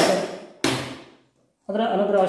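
Two sharp impacts about 0.6 s apart, each trailing off over about half a second, followed by a brief hush. A man's voice resumes near the end.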